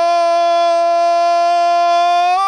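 A football commentator's long, held "gooool" cry, one steady high-pitched note sustained without a break, calling a goal.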